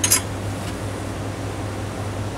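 Steady low machine hum in a small room, with a brief handling noise right at the start as the magnet is lifted off the instrument's magnet gripper.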